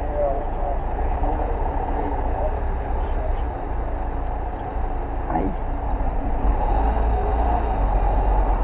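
A vehicle engine idling with a steady low rumble, with faint voices talking underneath.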